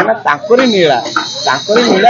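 A man speaking Odia in an interview, with a faint steady high-pitched tone underneath.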